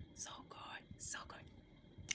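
Faint whispering in a few short breathy bursts.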